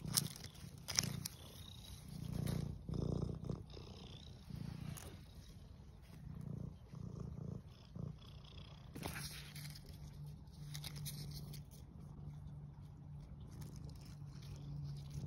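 Domestic cat purring close to the microphone, the purr swelling and fading with its breathing, then running more steadily near the end. A few light clicks and rustles come from hands handling turkey tail mushrooms on a log.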